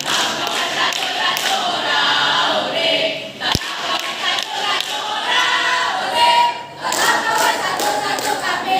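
A group of students singing together, loud, with a single sharp thump about three and a half seconds in.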